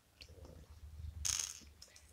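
Small LEGO plastic pieces handled and set down on a cardboard advent-calendar board: faint clicks and a short scraping rustle about a second and a quarter in.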